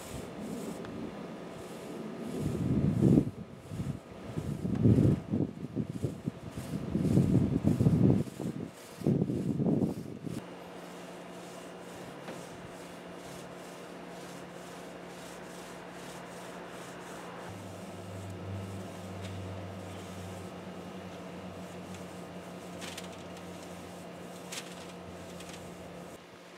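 A paintbrush rubbing over the steel body of a wood-burning heater as high-temperature paint goes on, with loud irregular low rumbles through the first ten seconds, then a steady low hum.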